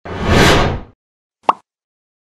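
Animated logo sound effects: a whoosh that swells and fades out within about a second, then a single short pop.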